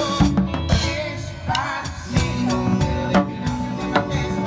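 Drum kit played in a live band: quick, steady stick hits on snare, toms and cymbals over the band's bass and other instruments, with a brief softer moment about halfway through.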